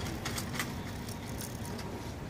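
Clear plastic sleeves around potted orchids crackling in a few short sharp bursts as a hand moves among them, over a steady low background hum.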